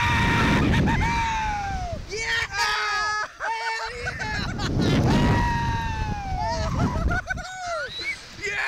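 Two riders screaming and laughing mid-flight on a Slingshot reverse-bungee ride, with wind buffeting the ride-mounted microphone. There are two long cries that slide down in pitch, one at the start and another about five seconds in, with shorter yells and laughs between.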